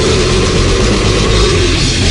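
Loud heavy metal recording: distorted electric guitars and drums, with a held note that sags slightly in pitch over the first second and a half.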